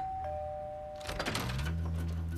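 Two-tone doorbell chime: a higher 'ding' and then a lower 'dong' a quarter-second later, both ringing for about a second. A low, steady tone comes in near the end.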